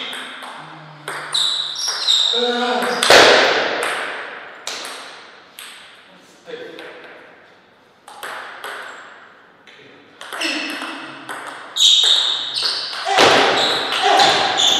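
Table tennis ball knocking back and forth between rubber paddles and the table in rallies, each hit a sharp click with a short ring. A short, loud shout from a player comes about three seconds in.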